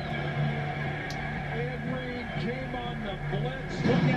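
Football highlight video audio playing quietly in the background: faint voices over music, with a steady low hum.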